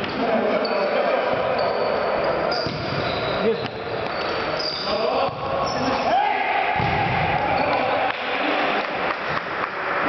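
Indoor football being played on a hard sports-hall floor: the ball thudding off feet and the court, with players' shouts and short high shoe squeaks, all echoing around the large hall.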